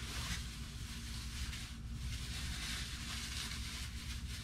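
Soft, uneven rustling of a clear plastic bag being handled, over a steady low hum.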